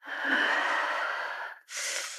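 A woman's heavy, breathy sigh as she wakes. One long breath of about a second and a half is followed, after a brief break, by a second, shorter and hissier breath.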